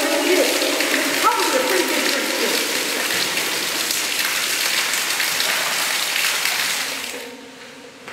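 Groundwater spilling down a rock wall and splashing, a steady hiss of falling water that cuts off about seven seconds in.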